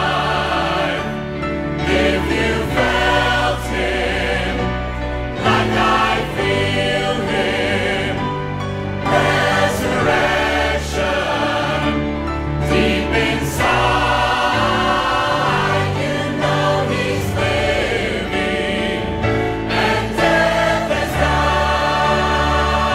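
Large mixed church choir, men and women, singing a Christian song over instrumental accompaniment with long, held bass notes.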